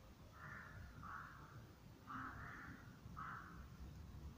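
A rook giving a series of short, faint, hoarse caws, about one a second.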